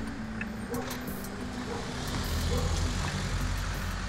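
Street traffic noise, with a motor vehicle's engine running steadily as a low rumble.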